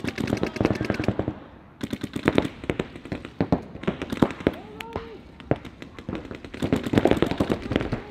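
Paintball markers firing rapid strings of shots in several overlapping volleys, with a voice calling out about four seconds in.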